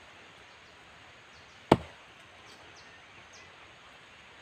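A single sharp chop of an axe blade being driven into a wooden log, a little under halfway through, over a faint steady outdoor background hiss.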